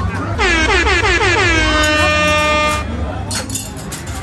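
A loud horn-like tone that starts about half a second in as a fast run of falling warbles, then holds one steady note until it cuts off just before three seconds in.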